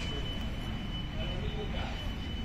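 Indoor shop background: a steady low rumble with a thin, faint high-pitched whine held on one note.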